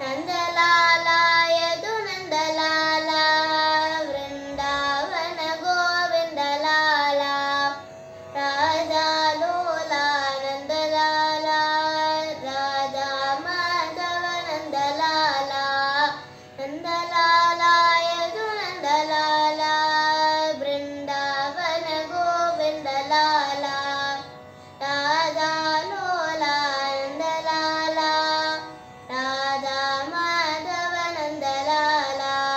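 A young girl singing a Krishna devotional song in Carnatic style, her voice gliding and ornamenting through long phrases with brief pauses for breath every several seconds.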